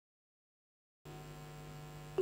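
Dead silence for about a second, then a faint steady electrical hum, like mains hum.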